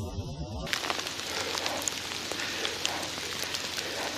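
Muffled voices for a moment, then a sudden change to a steady outdoor hiss with scattered light clicks and crackles.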